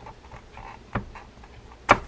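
Reel parts clicking: a light click about a second in, then a loud sharp click near the end as the rotor of a Daiwa 7850RL spinning reel is pulled up and off the pinion gear.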